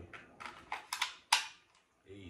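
Light clicks and rattles of an AR pistol and its drum magazine being handled, with one sharp, loud click a little past the middle as the drum magazine is pushed into the magazine well.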